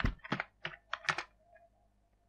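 A run of about six sharp clicks and taps at a computer, irregularly spaced, in the first second and a half.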